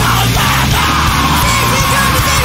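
Loud, dense chaotic-emo (screamo) rock with distorted guitars and drums, and a screamed vocal held from about half a second in.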